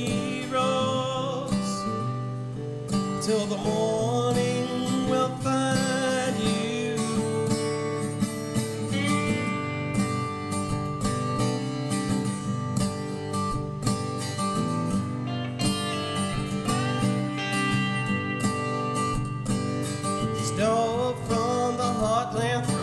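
Resonator guitar played alone as an instrumental break between verses, picked and strummed, with a few notes gliding in pitch a few seconds in and again near the end.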